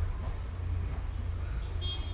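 A steady low rumble, with a short high electronic beep near the end.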